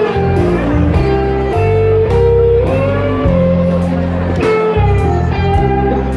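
Live band playing an instrumental passage: electric guitar holding and bending notes over bass guitar and drums with cymbals.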